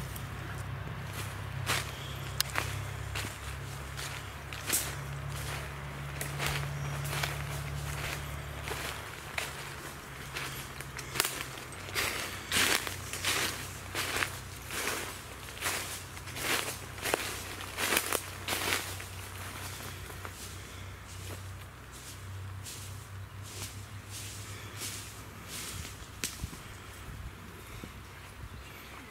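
Footsteps crunching through dry fallen leaves at a walking pace, about two steps a second, loudest in the middle stretch. A low steady hum runs underneath through the first third.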